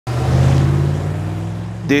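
A truck's engine running as the truck pulls away, blowing out exhaust smoke: a steady low drone that slowly fades. A voice starts just at the end.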